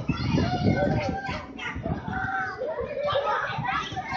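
Children and young riders on a spinning chair-swing ride shouting and chattering together, with many overlapping calls that rise and fall in pitch.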